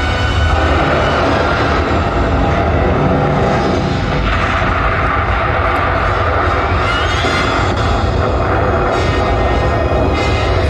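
Loud, dramatic film-soundtrack music over a continuous deep rumble, played through theatre speakers, with a rising sweep about seven seconds in.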